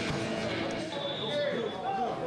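Faint voices out on the pitch, and in the second half a thin, steady high whistle tone lasting about a second: the referee's whistle for the kickoff.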